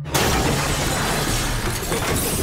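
A sudden, loud crash of shattering glass that starts just after the beginning and runs on as a long, dense smash of breaking glass, a dramatised trailer sound effect.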